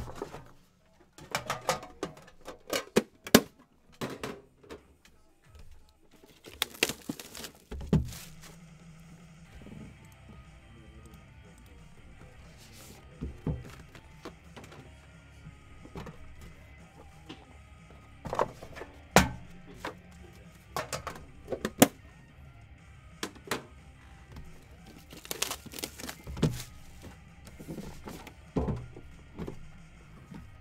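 Background music under irregular knocks, taps and scrapes as cardboard trading-card boxes are handled, opened and set down on a table. The sharpest knocks come about three seconds in and around twenty seconds.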